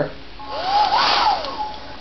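Conair Supermax hair dryer switched on briefly: its fan whine rises to a peak about a second in and then falls away, over a hiss of rushing air.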